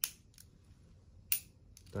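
Two light, sharp clicks about a second and a half apart from the working gadget mechanism of a Corgi die-cast Aston Martin DB5 toy car, worked by hand.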